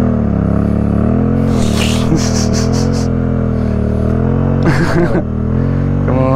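Motorcycle parallel-twin engine idling close by, steady, its pitch wavering slightly up and down. A short rush of hissing noise comes about a second and a half in.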